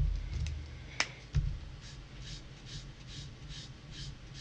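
A sharp click about a second in and a soft knock just after it. Then a Copic marker's nib rubs back and forth on paper in quick faint strokes, about four or five a second, laying red over blue to blend them.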